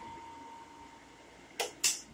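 Three-phase water pump motor running with a faint steady hum and a thin whine, building pressure in a hydropneumatic system after being switched to automatic. A few short sharp noises come near the end.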